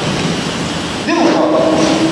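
A steady hiss of noise, then about a second in a long, held kendo kiai shout at one steady pitch, ringing in a large hall.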